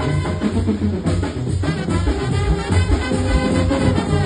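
Mexican banda playing live: trumpets over a steady drum beat and a stepping bass line.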